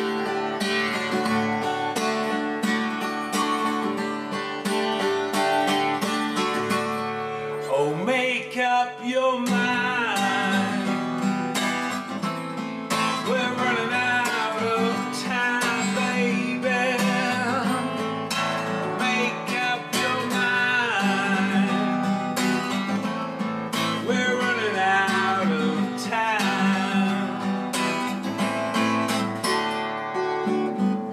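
A song played live on a strummed acoustic guitar. A man's singing voice comes in about eight or nine seconds in and carries on over the guitar.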